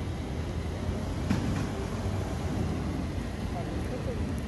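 Steady low outdoor rumble, with one faint click about a second in.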